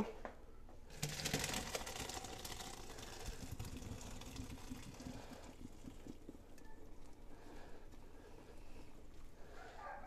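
Hot pasta water poured from a pot through a plastic colander into a stainless steel sink, splashing hardest about a second in and then tapering off over the next few seconds.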